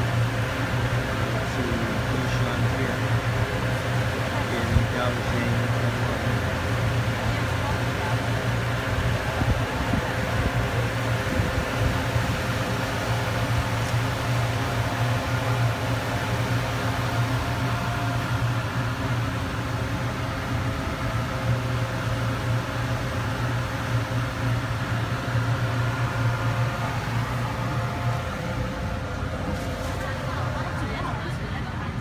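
A ferry's engine running steadily under way, a constant low drone with several steady tones above it, over a hiss of churning water.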